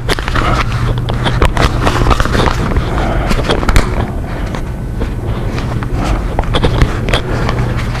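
Small plastic router-bit case being worked open by hand: irregular clicks, scrapes and rattles of plastic over a steady low hum.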